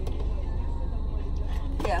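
A car engine idling, heard from inside the cabin as a steady low rumble.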